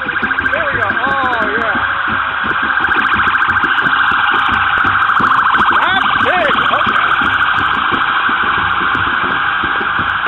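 Police car siren sounding in a rapid electronic yelp, a fast-pulsing wail that grows louder over the first few seconds and then holds.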